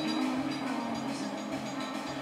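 Live band playing without vocals: sustained chords held over upright bass notes, with light cymbals above.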